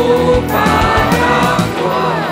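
A song: several voices singing together over instrumental backing with a drumbeat.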